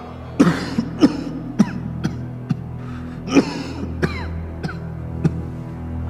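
A man coughing into a handkerchief in a fit of about ten short, harsh coughs, a cough that brings up blood. A low, steady music score plays underneath.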